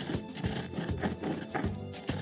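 Background music over a granite mortar and pestle crushing whole coriander, cardamom, fennel and cumin seeds, with irregular grinding and crunching strokes.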